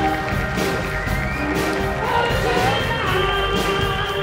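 Live rock band playing: drums, electric guitar and keyboard, with sustained notes over a steady beat.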